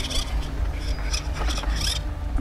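A few light knocks and scrapes as a plastic quadcopter airframe is lifted from its case and set down on grass, mostly in the second half, over a steady low rumble of wind on the microphone.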